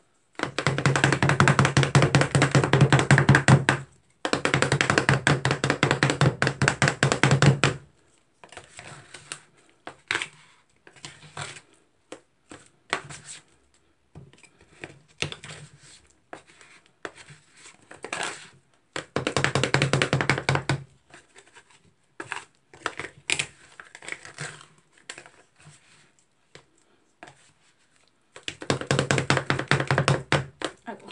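Two plastic spatulas chopping and scraping an Oreo and chocolate-milk mix on the frozen metal plate of a rolled-ice-cream pan. The chopping comes in fast runs of strokes, the longest in the first eight seconds, with scattered lighter taps and scrapes between.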